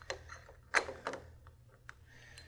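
Light clicks and knocks of a Kwikset deadbolt's lock assembly being pushed into place in the door's bore, metal parts meeting the latch. The loudest comes a little under a second in, with smaller ones around it, over a faint steady low hum.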